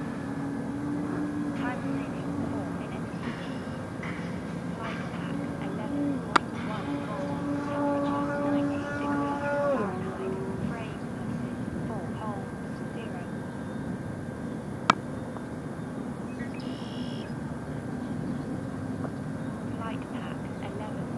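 Electric motor and propeller of a radio-controlled Edge 540T aerobatic plane in flight, a steady drone whose pitch shifts with throttle; in the middle a held tone drops in pitch about ten seconds in. A few sharp clicks stand out.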